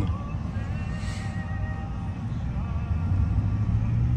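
Steady low drone of a pickup truck's engine and tyres heard from inside the cab while driving.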